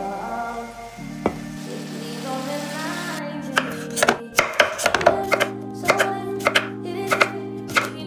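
Large kitchen knife slicing a cucumber on a wooden cutting board: a quick, irregular run of crisp chops, about three a second, starting about three seconds in, over background music.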